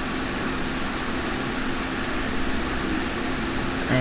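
Steady whir of a running fan, with a faint low hum.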